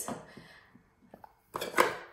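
Small plastic playset pieces being handled: a few faint clicks about a second in, then a short, louder scraping rustle near the end.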